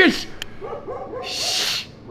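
A dog barking, a few short barks about half a second to a second in, followed by a brief hiss.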